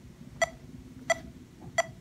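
Unamplified electric guitar string picked with a plectrum in a steady rhythm: short, bright, quickly decaying notes, about three every two seconds. The picking wrist is twisted up, a common right-hand error.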